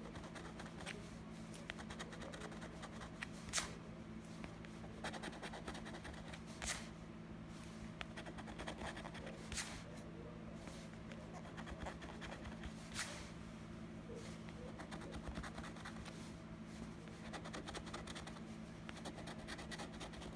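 A coin scraping the scratch-off coating from a paper lottery instant ticket: a faint, continuous run of short scratching strokes, broken by a few sharper clicks.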